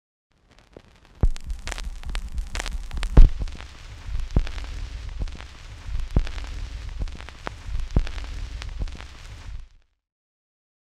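A low rumble with faint hiss and scattered irregular clicks and pops, starting about a second in, with the sharpest click about three seconds in, and cutting off shortly before the end.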